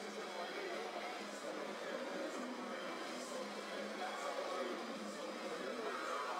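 Indistinct voices with faint music underneath, with no clear words.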